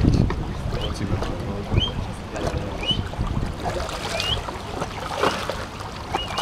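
Water sloshing and splashing at the edge of a wooden jetty as a large stingray rises at the surface, with wind rumbling on the microphone.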